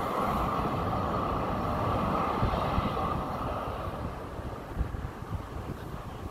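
City tram running along its rails, a steady rumble that slowly fades away over the second half.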